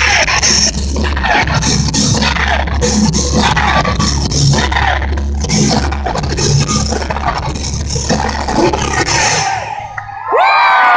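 A metal band playing live and loud through the PA, with a heavy, steady bass. The music cuts off shortly before the end.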